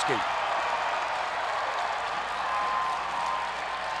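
Hockey arena crowd cheering and applauding just after a goal, a steady wash of noise with no single standout sound.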